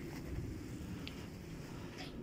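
Faint low background rumble, with one light tick about a second in.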